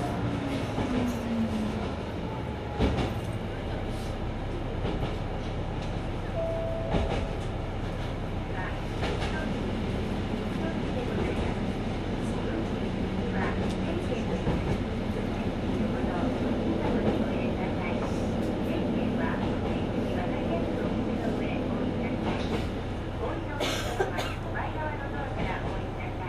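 Mizushima Rinkai Railway MRT300 diesel railcar running along the line, a steady engine and running noise with irregular sharp clicks from the wheels.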